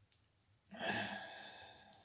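A man's sigh: one long breath out that starts suddenly a little past the middle and fades away.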